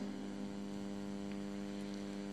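Steady electrical mains hum: a constant low buzzing drone with a stack of evenly spaced overtones and no change in pitch.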